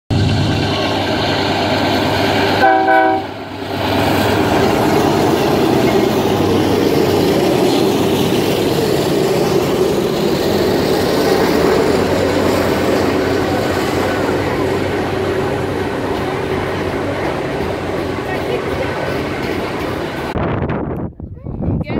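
Freight train with diesel locomotives passing close by. Its air horn sounds a chord that cuts off sharply about three seconds in, then the hopper cars rumble and clatter steadily past on the rails.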